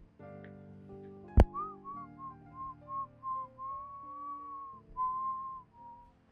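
A person whistling a short tune, a run of quick notes ending on two longer held ones, over soft background music with sustained chords. A single sharp click, the loudest sound, comes just before the whistling starts.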